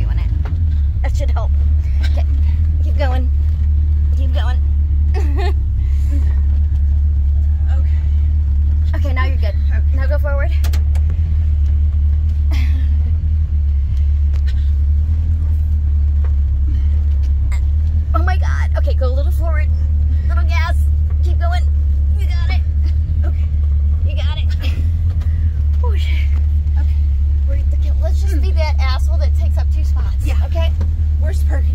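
1977 Chevrolet Camaro Z28's V8 engine running, heard from inside the cabin as a steady low rumble.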